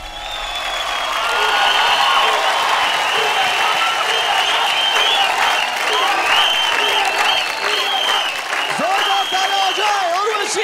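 Studio audience applauding and cheering, with high-pitched shouts and screams held over the clapping throughout; a voice begins to come through near the end.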